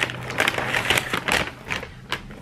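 McDonald's brown paper takeaway bag rustling and crinkling as hands dig into it and pull out a cardboard burger box, a dense crackle that dies down near the end.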